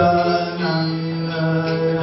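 A man singing a slow Vaishnava devotional song (bhajan) into a microphone, holding each note for about half a second before moving to the next.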